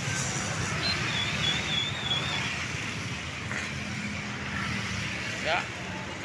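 Steady road traffic passing close by: motorcycle and car engines and tyres on a wet road. A brief wavering high whistle sounds about a second in.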